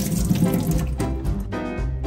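Kitchen tap running, its water splashing over cherry tomatoes in a plastic punnet and into a stainless-steel sink, strongest in the first second. Background music with a steady beat plays throughout.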